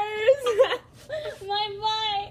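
Girls laughing in high-pitched, drawn-out squeals, several held notes in a row.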